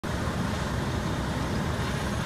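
Fire engine diesel running at a building fire, a steady low rumble under a constant hiss.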